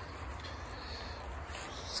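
Faint, steady low background noise with no distinct event; the circular saw is not yet running.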